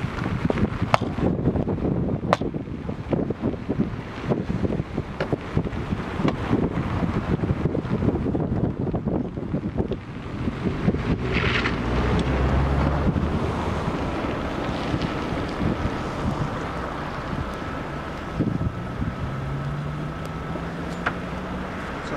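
Wind buffeting the microphone over the rumble of a car driving on a snowy road. Past the middle there is a short hiss, and over the last few seconds an engine note rises in pitch.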